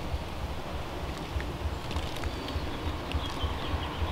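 Wind rumbling on the microphone, steady and low, with a few faint ticks as a gloved hand scoops compost and larvae.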